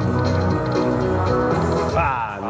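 Buffalo Link slot machine playing its free-games bonus music, a steady held chord over a bass note, as the last free spin ends the bonus.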